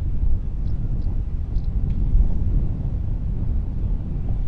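Wind buffeting the camera microphone: a loud, uneven low rumble that swells and falls.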